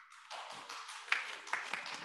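Applause from a church congregation: a continuous patter of many irregular hand claps that starts suddenly as the piano music ends.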